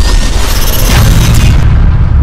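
Loud cinematic logo-reveal sound effect: a deep boom with a noisy whoosh over music. The whoosh cuts off about one and a half seconds in, leaving a low bass rumble.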